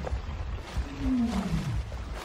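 An Asian elephant gives one short call about a second in, falling steadily in pitch, over low background noise.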